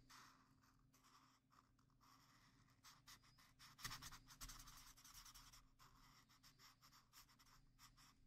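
Faint scratching of a marker tip stroking over paper as a mandala is coloured in, in short back-and-forth strokes that get a little busier about four seconds in.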